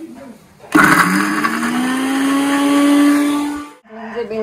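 Electric mixer grinder grinding a wet spice paste in its steel jar. The motor starts suddenly under a second in and rises in pitch as it comes up to speed, runs for about three seconds, and cuts off abruptly just before the end.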